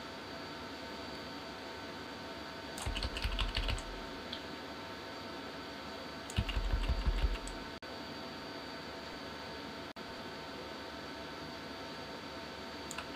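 Computer keyboard keys tapped in two quick runs, about three seconds in and again at about six and a half seconds, over a steady faint room hum. These are the bracket keys next to P, pressed to change the brush size.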